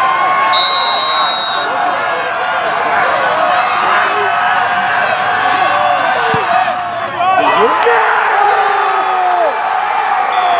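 Football crowd of spectators and players, many voices shouting and cheering at once through a field goal attempt, with a short high whistle about half a second in and a swell of yells after the kick.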